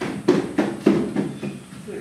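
Indistinct children's voices, broken by a few short, sharp knocks.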